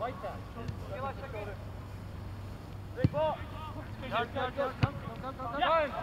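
Shouted calls from soccer players across the field, with two sharp thuds of a soccer ball being kicked, about three seconds in and again near five seconds, over a steady low hum.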